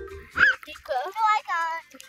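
A child's high-pitched squeals and wordless vocal sounds, several short calls that bend up and down in pitch. Background mallet-percussion music stops just as they begin.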